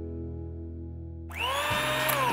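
The held closing chord of a music jingle fades. About a second and a half in, an electric hand mixer is switched on: its motor whine rises quickly in pitch as it spins up, then runs steadily.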